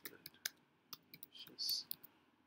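Typing on a computer keyboard: a quick, irregular run of key clicks as a word is typed out, with a brief, louder hiss near the end.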